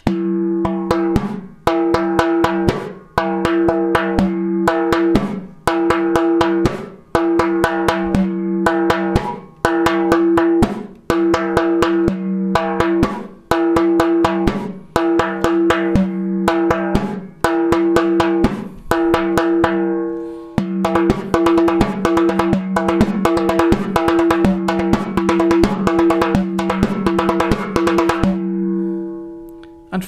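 Frame drum played with the hands: a short rhythmic phrase of ringing open tones and quick finger strokes, repeated about every second and a half. In the last third the strokes become a denser, continuous run before the playing stops near the end.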